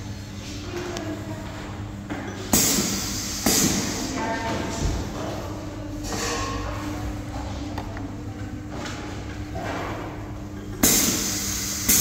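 Pneumatic piston filling machine cycling: sudden hisses of compressed air from its valves, several times, over a steady low hum.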